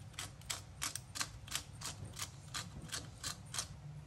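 A hand-twisted pepper grinder grinding black peppercorns, giving an even run of sharp ratcheting clicks, about three a second, that stops shortly before the end.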